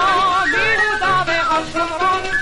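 Vintage 1952 recording of a Hebrew children's song: a singer's voice with wide vibrato over instrumental accompaniment.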